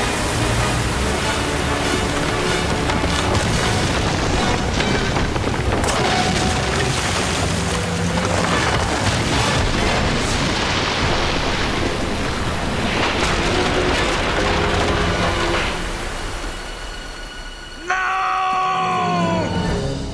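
Cartoon action soundtrack: dramatic orchestral score over heavy rumbling crashes and booms. Near the end it drops away, then a sudden call with several falling pitches breaks in.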